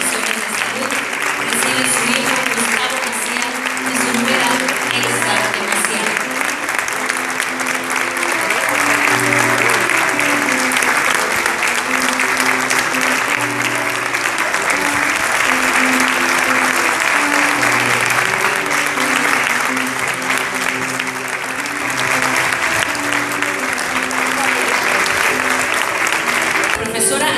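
Audience applauding steadily, with background music of held, changing notes playing underneath.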